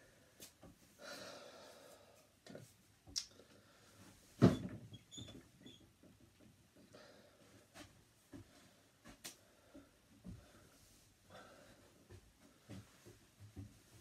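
Quiet room sounds of a person moving about while dressing: scattered light knocks and rustles, with one sharper, louder knock about four and a half seconds in.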